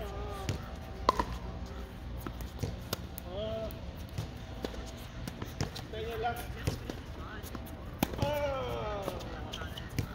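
Doubles tennis rally: tennis balls struck by racquets, a series of sharp pops at irregular intervals, the loudest about a second in and about eight seconds in, with short vocal calls from the players between shots.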